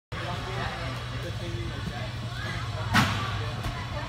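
Gym background of scattered distant voices over a steady low hum, with one sharp slap about three seconds in as the gymnast's hands strike the parallel bars.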